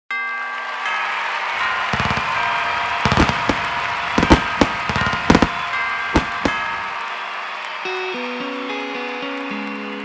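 Background music with a fireworks sound effect laid over it: a string of sharp bangs and crackles between about two and six and a half seconds in. The music carries on alone afterwards.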